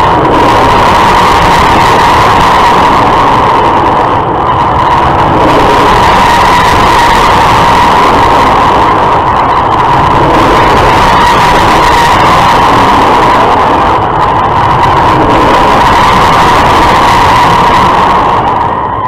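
Larson giant loop ride's car circling its vertical loop track on an on-ride camera: a loud, steady rush of wind and running noise with a constant whine running through it.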